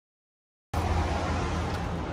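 Dead silence, then about two-thirds of a second in a steady background noise with a strong low rumble cuts in abruptly.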